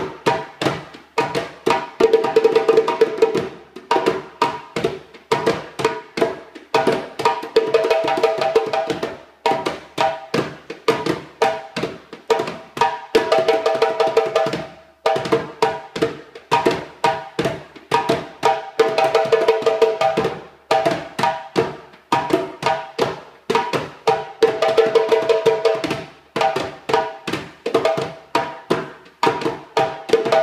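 Djembe hand drumming, a large djembe and a small one played together in a steady rhythm of sharp slaps and tones. About every five or six seconds the playing thickens into a dense run of fast strokes.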